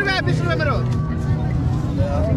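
Crowd voices, with a man talking during the first part, over a steady low engine hum.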